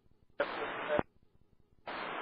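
Air traffic control VHF radio feed: a short burst of radio hiss without clear words, about half a second long, cut off by a squelch click, then dead air. Near the end the hiss of the next transmission opens.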